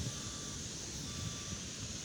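Steady outdoor background noise: a low rumble with an even hiss and no distinct events.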